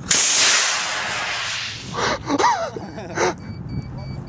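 Aerotech G80 composite rocket motor igniting as a LOC Precision Aura lifts off the pad: a sudden loud rushing hiss that fades over about two seconds as the rocket climbs away.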